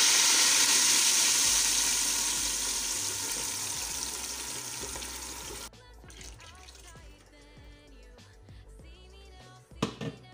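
Red tomato purée poured into hot frying oil in a stainless steel stockpot, sizzling loudly and fading over about five seconds before cutting off abruptly. Quiet background music follows, with a brief knock near the end.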